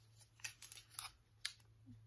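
Faint handling noise: three short clicks, about half a second apart, as a small decor item is picked up and turned over in the hands.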